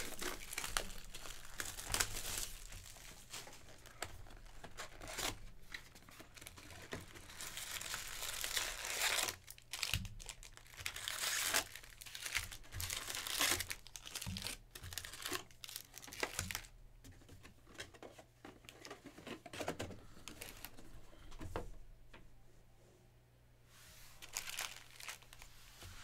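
Plastic shrink wrap crinkling and tearing as it is stripped off a cardboard trading-card box, followed by the wrapped card packs rustling as they are lifted out of the box and stacked. The crinkling comes in irregular bursts and thins out near the end.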